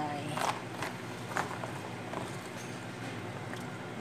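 Kitchen stovetop sounds from a stainless steel pot of soup heaped with water spinach: a few light taps and clicks in the first second and a half, over a steady low hum.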